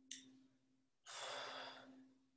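A woman's breathing during plié squats: a short, sharp breath in at the start, then a long, rushing breath out lasting about a second, starting about a second in.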